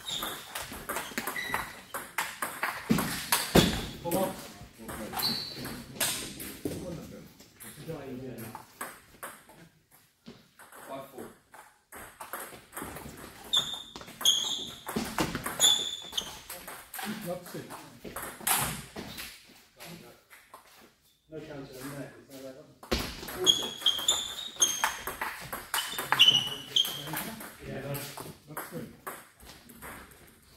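Table tennis rallies: the celluloid-type ball clicking quickly off bats and the table in three bursts of play, with quieter pauses between points. Short high squeaks of shoes on the sports floor run through the faster exchanges.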